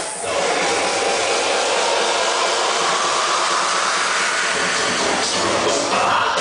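Dance-music breakdown with the bass and kick dropped out, leaving a loud, steady wash of noise.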